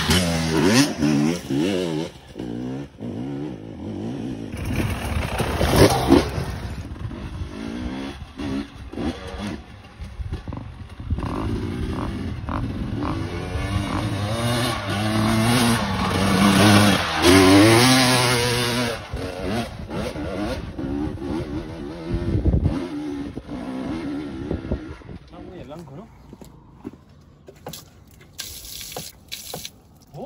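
Enduro dirt bike engine revving up and down under throttle as it climbs a rocky trail, with knocks from the rough ground. It is loudest in the middle and grows quieter and more broken near the end.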